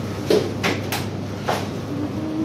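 Supermarket background: a steady low hum with a few short, sharp knocks and clicks, the loudest about a third of a second in.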